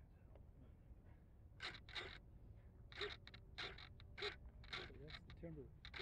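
Faint, distant voices of people talking over a low steady background rumble. The plane's motor is not running.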